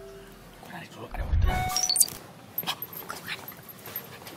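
Short bright phone-notification chime, a ringing ding about a second and a half in, over a low thud.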